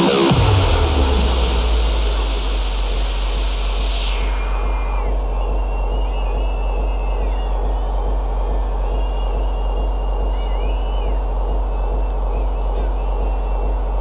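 Electronic dance music in a breakdown: the beat stops, leaving a deep held bass note under a high noise sweep that falls away over the first four seconds. Faint cheers and whistles from the festival crowd rise and fall over it.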